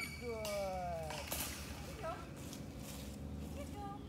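A dog whining: several high whimpers, each sliding down in pitch, the longest in the first second. A short clink comes about a second in.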